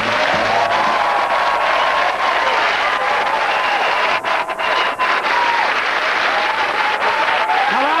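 Studio audience applauding steadily, with a few brief dropouts about four to five seconds in.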